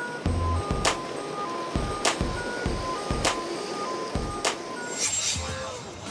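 Background music with a steady beat: a sharp hit about every 1.2 seconds over a quicker low beat, with short high synth notes. It thins out near the end.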